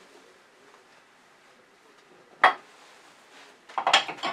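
A single sharp metal clank about two and a half seconds in, then a short run of clicks and knocks near the end: a metal lathe tool rest being taken out and a smaller one fitted in its place.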